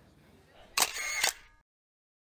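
Camera shutter sound: two sharp clicks about half a second apart with a hissing whir between them, then a sudden cut to silence.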